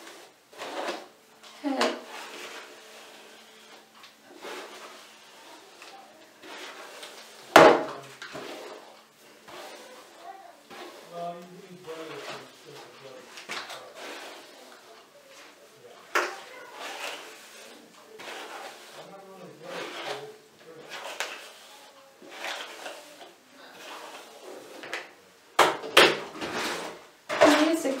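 A hairbrush drawn repeatedly through long hair, a run of short brushing strokes, with one sharp knock about eight seconds in and a quick cluster of hard knocks near the end as the brush is put down on the counter.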